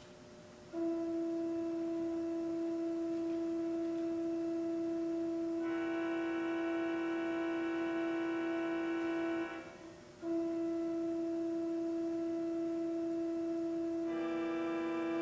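Organ holding one long sustained note, a pure, flute-like tone. About six seconds in a brighter, fuller sound joins it for a few seconds; the note breaks off briefly near ten seconds and then sounds again on its own.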